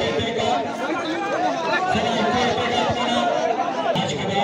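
A large crowd of men talking and calling out all at once, many overlapping voices with no single speaker standing out.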